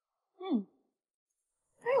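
A woman's brief sigh, falling in pitch, about half a second in, followed near the end by the start of her speech.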